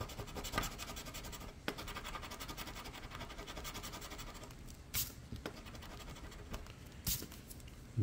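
A coin scratching the coating off a scratch-off lottery ticket. Rapid, dense strokes fill the first half, then the strokes thin out, with a few sharper clicks around the middle and near the end.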